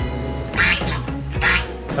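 A white domestic waterfowl calling three times in short, harsh bursts, about a second apart, over background music.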